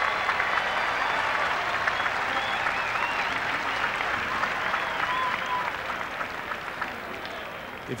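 Stadium crowd applauding and cheering for a player's introduction, a steady wash of clapping that eases slightly near the end.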